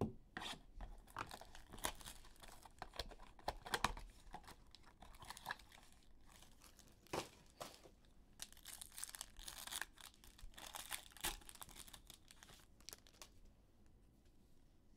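Foil trading-card pack being torn open and its wrapper crinkled, amid short rustles and clicks of a card box and cards being handled. The rustling is densest past the middle.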